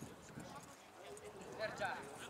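Distant shouts of players and coaches across a football pitch, faint at first, with a louder call rising near the end.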